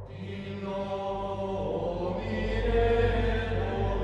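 Background ambient music with sustained low drones and chant-like voices, swelling about two seconds in.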